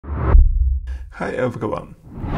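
A deep, loud boom in the first second, ringing out low for most of a second, then a man's voice saying "Hi".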